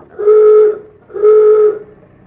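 A vehicle horn sound effect honking twice, two steady half-second blasts on one pitch. It is the horn of a sightseeing bus behind, signalling that it wants to pass.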